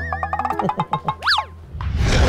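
Comic sitcom sound effects: a run of quick plucked notes over a low held note, a quick up-and-down whistle glide about a second and a half in, then a transition whoosh near the end.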